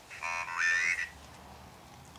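Ovilus III spirit box speaking the word "foliage" from its dictionary in a buzzy synthesized voice: one short word of under a second, rising in pitch near its end.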